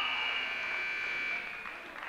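Gym scoreboard buzzer sounding one long steady tone that cuts off about a second and a half in, as the wrestling bout ends.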